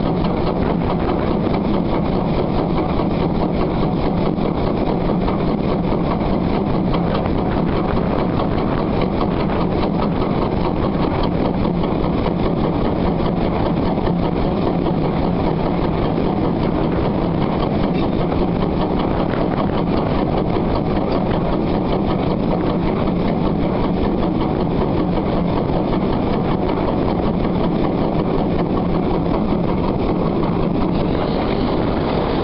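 Heritage train running at a steady pace behind ex-Caledonian Railway 0-6-0 No. 828: a loud, unbroken drone of engine and running noise mixed with wind on the microphone in the slipstream.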